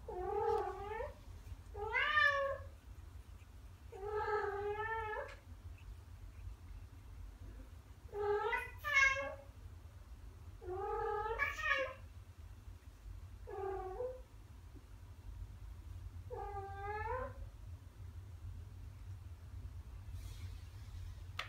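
Ragdoll cat meowing: seven drawn-out, wavering calls a few seconds apart.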